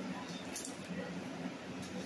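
Faint rustling and crinkling of a plastic package being opened by hand, with brief crackles about half a second in and again near the end.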